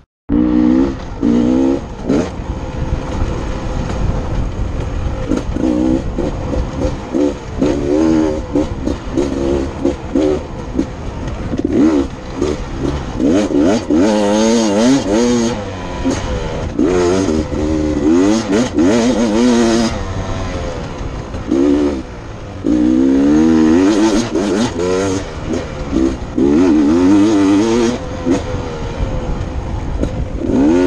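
Dirt bike engine running under changing throttle as it is ridden along a rough dirt trail, its revs rising and falling again and again.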